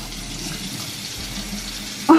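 Bathroom sink faucet running steadily, water splashing into the basin as hair is rinsed under it.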